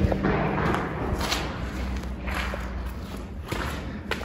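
Footsteps squelching through wet, sloshy mud and shallow puddles on the floor of a railway tunnel, about one soft step a second.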